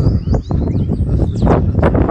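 Outdoor ambience: wind rumbling on the microphone, with short high chirps of small birds and a few sharp knocks in the second half.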